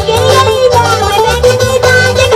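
A live band playing loud music: a guitar melody over a repeating bass line, with drums.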